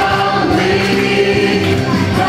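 A congregation singing a worship song together, a choir-like mass of voices holding sung notes.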